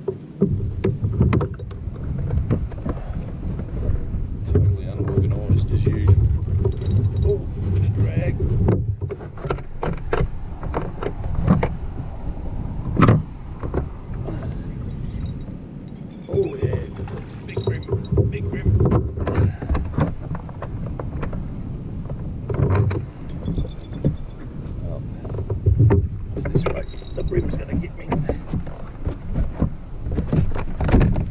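Handling noises on a Hobie fishing kayak while a hooked fish is played: irregular knocks, clicks and rubbing on the plastic hull and gear over low rumbling. Two short high-pitched chirps come about halfway through and again a few seconds later.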